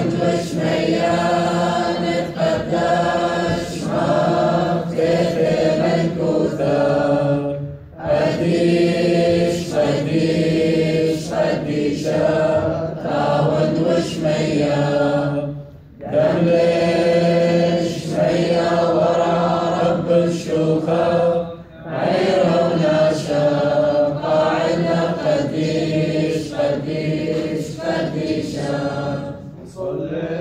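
Men's voices chanting a Syriac liturgical hymn of the Assyrian Church of the East, in long sung phrases broken by short pauses every several seconds.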